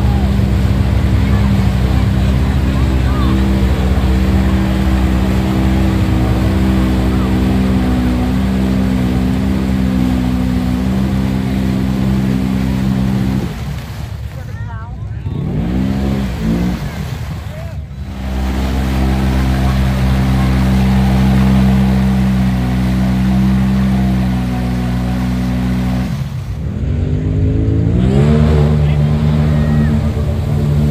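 Side-by-side UTV engine held at high revs as it churns through deep mud, with the throttle dropping off twice and the engine revving back up in a rising whine each time.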